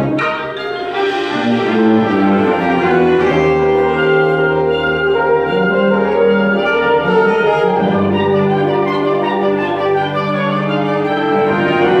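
School concert band playing: woodwinds and brass with tuba sounding full, held chords over a low line that changes note every second or two.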